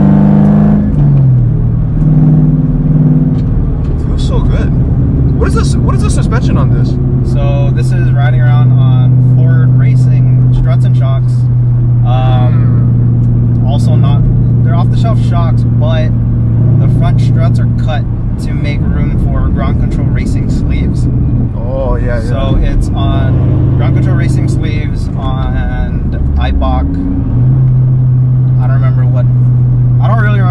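Cabin sound of a supercharged 2007 Mustang GT's 4.6-litre V8, with an off-road H-pipe exhaust, driving with a steady low drone. The revs drop in the first second and pick up again near the end.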